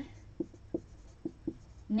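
Marker pen writing on a whiteboard: about five short squeaky strokes in two seconds as letters are written, over a faint low steady hum.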